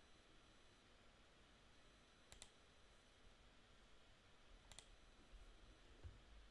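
Two quick double clicks of a computer mouse, about two and a half seconds apart, over near silence.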